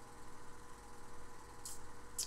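A pause in conversation, holding only the recording's steady low hum and hiss. A short, faint burst of hiss comes about three-quarters of the way through.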